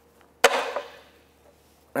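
Rubber oil hose popping off the oil-pump nipple as it is twisted free with needle-nose pliers: one sharp snap about half a second in, trailing off in a short scuffing rustle.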